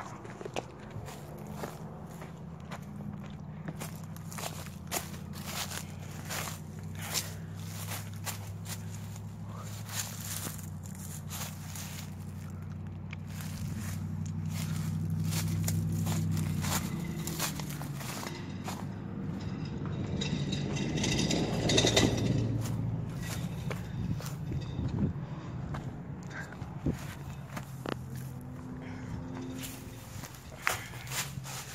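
Footsteps on grass and pavement over a car engine's low, steady hum. About twenty seconds in, a car passes close by, its noise swelling to the loudest point and then fading.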